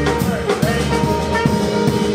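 Jazz band playing live: saxophones, clarinet and trumpet holding long notes over upright bass, piano and drum kit.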